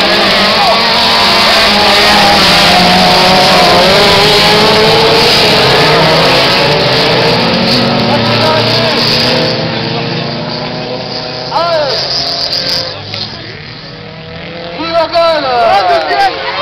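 A pack of autocross cars racing past together on a dirt track, many engines running hard at once. It is loud for about the first ten seconds, then fades, and near the end single engines rise and fall in pitch.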